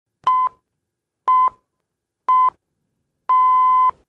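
Radio time-signal pips: four electronic beeps at the same pitch, a second apart, three short and the fourth longer, marking the top of the hour before the news.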